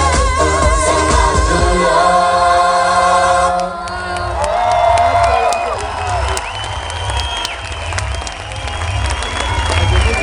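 Live eurodance concert heard from within the audience: loud music with a heavy bass beat and long sung notes. About three and a half seconds in the singing and melody drop away, leaving the beat under voices and crowd cheering.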